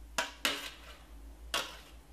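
Metal box grater clinking against a ceramic plate three times, two quick knocks close together and a third about a second later, as it is set down and tapped among the freshly grated ginger.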